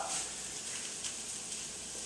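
Low, steady hiss of food frying in olive oil in a skillet on a gas stove.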